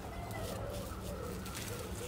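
A pigeon cooing: a run of short, soft coos, each rising and falling, over a low steady hum.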